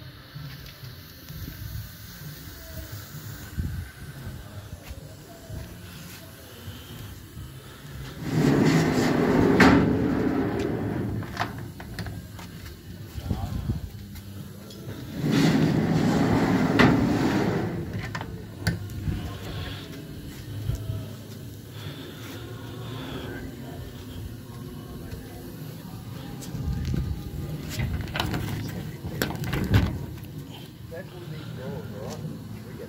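A long steel trailer drawer sliding on telescopic ball-bearing runners, twice, each slide lasting about two seconds, around eight and fifteen seconds in.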